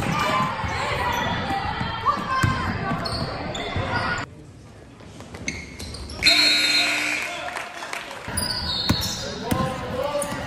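Basketball game sound in a gymnasium: a ball bouncing on the court with voices echoing around the hall. The sound changes abruptly twice, dropping quieter about four seconds in and jumping louder about six seconds in, as clips from different games are cut together.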